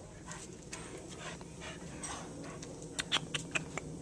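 Rhodesian Ridgeback giving a quick run of five or six short, sharp yips about three seconds in, the first of them the loudest.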